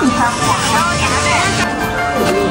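People talking over background music with steady held tones.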